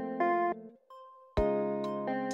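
Background music of guitar chords: one chord rings and changes to another just after the start, stops sharply, and after a short gap a new chord is struck about one and a half seconds in.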